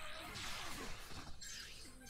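Quiet crashing, shattering sound effect from an animated fight scene, fading away.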